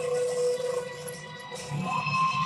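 Background music with long held notes, playing steadily at a moderate level.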